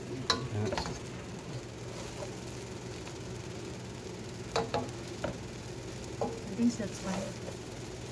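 Pancit noodles being stirred and tossed in a pot with a wooden spatula and a plastic spoon, over a low frying sizzle, with scattered knocks and scrapes of the utensils against the pot.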